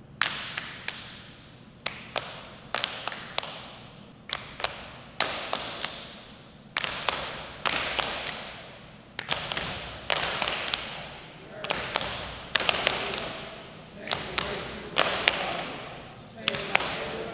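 Open hands slapping and tapping a bare concrete wall, many sharp strikes in loose clusters about a second apart, each echoing briefly.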